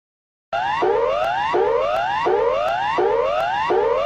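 Electronic laboratory alarm: a whooping tone that sweeps upward again and again, about three sweeps every two seconds, starting about half a second in.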